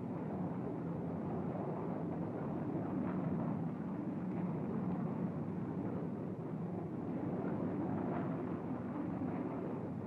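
Steady drone of a B-52 bomber's jet engines in flight, an even rushing noise at a constant level.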